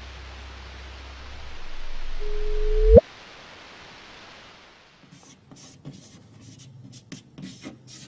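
Sound rendering of LIGO's first detected gravitational wave, the real signal shifted up in frequency: a rumbling noise that swells over about two seconds, then a chirp, a short tone that sweeps sharply upward and cuts off suddenly about three seconds in. The chirp is the sign of two black holes spiralling together and merging. Faint scattered clicks follow in the last few seconds.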